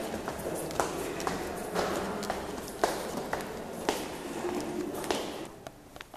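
Footsteps climbing a stone staircase, hard steps about two a second, over a low murmur of voices. The sound drops quieter near the end.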